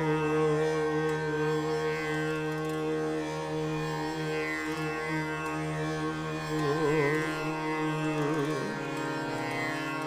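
Slow unmetred khyal alap in Raga Darbari Kanada: a male voice holds one long steady note over a harmonium and the tanpura drone, with no tabla. About seven seconds in the note begins to sway in slow oscillations, then softens near the end.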